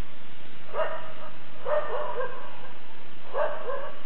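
A dog barking repeatedly in short, yipping barks: one bark about a second in, a quick run of three around two seconds, and two more near the end, over a steady hiss.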